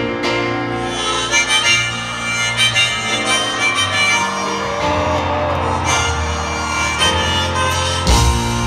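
Harmonica playing a melody over piano and bass in a live band performance, recorded from the stands of an arena.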